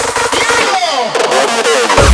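Makina dance track in a DJ mix at a break: the kick drum and bass drop out and synth sounds glide down in pitch, then the kick and bass come back in right at the end.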